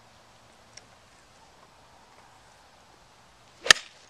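After a few quiet seconds, a golf club strikes a golf ball: one sharp click near the end.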